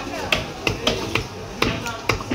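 Large knife chopping through a carp fillet and striking a wooden cutting block, five or six sharp knocks in quick, uneven succession.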